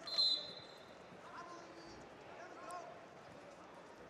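A referee's whistle blown once, a short, high, steady blast of about half a second that restarts the wrestling bout, followed by a low murmur of arena crowd noise.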